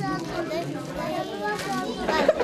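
Children's voices: several children talking quietly at once, a low chatter in a room.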